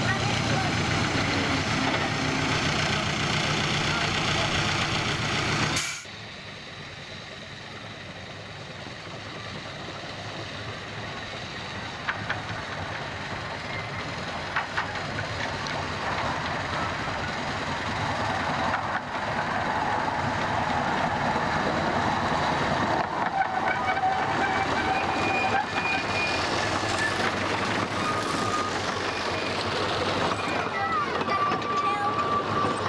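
A miniature railway locomotive's engine running steadily at the platform; it cuts off suddenly about six seconds in. Then a miniature train approaches along the track, its running noise growing steadily louder as it comes close and passes, with voices of the passengers.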